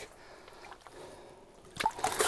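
Faint sloshing of water as a lake trout is lowered back into the ice hole and released, with a small knock near the end.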